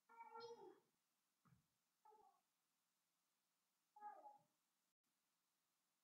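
Faint cat meowing, three calls about two seconds apart, the first the longest.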